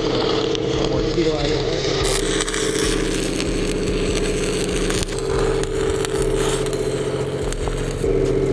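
Stick welding on a steel pipe: the electric arc crackles and sputters steadily, loudest from about two seconds in. Underneath runs the steady hum of an engine.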